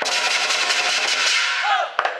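Lion dance percussion, drum with clashing cymbals, playing a fast, dense roll that breaks off abruptly at the very end.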